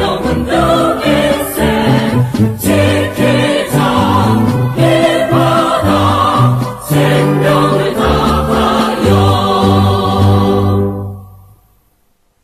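A choir sings a Korean military song with instrumental accompaniment. It ends on a held final chord that fades away near the end.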